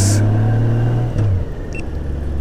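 Honda GL1800 Gold Wing's flat-six engine running at low street speed with a steady low note. About a second in, the note falls and gets quieter.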